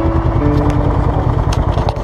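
Motorcycle engine idling with a fast, even throb.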